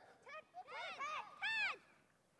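Faint, wordless calls from children's voices, four or five short shouts that each rise and fall in pitch.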